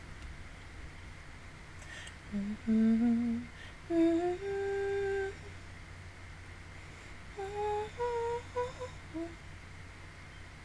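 A woman humming a short tune with her mouth closed, in two phrases: a few notes ending on a held note a couple of seconds in, then a shorter run of notes near the end.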